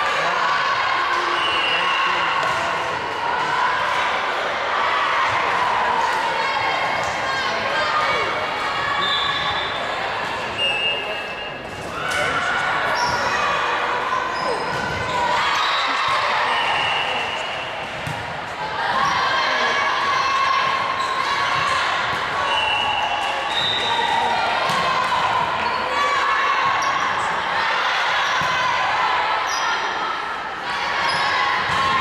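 Volleyball match noise in a gymnasium: a continuous din of players' and spectators' shouting and calling, with the ball being hit and sneakers squeaking on the hardwood floor, echoing in the hall.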